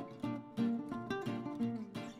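Background music: plucked guitar notes in a quick, picked melody, several notes a second, each ringing briefly before the next.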